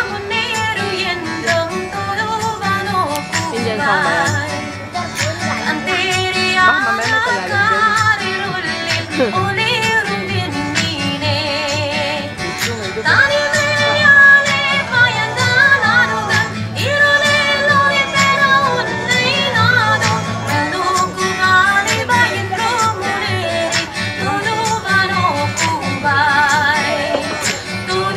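A performer singing a sing-along song with a wavering, ornamented voice over music with guitar and a steady low beat.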